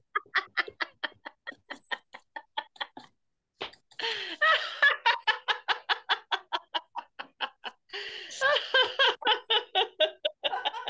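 Deliberate, rhythmic laughter in a laughter-yoga exercise, laughing like monkeys: short bursts of about four to five a second, with a brief break about three seconds in.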